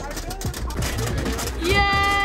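A woman cheering 'Yay!' as one long, drawn-out call near the end, over low outdoor rumble and faint background chatter.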